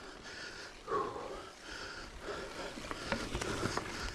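Heavy breathing of an exhausted mountain-bike rider on a hard climb, with sharp clicks and rattles from the bike on the trail in the last second or so.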